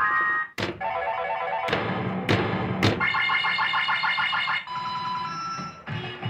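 A coin-op pinball-style gambling machine plays electronic beeping jingles, with four sharp clacks in the first three seconds as the ball strikes the playfield. Near the end the jingle changes to a couple of long held beeps.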